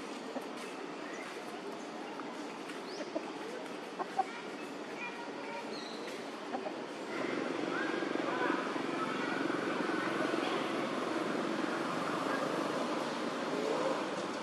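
Outdoor background noise with faint, indistinct voices, getting louder about halfway through; a few light clicks in the first half.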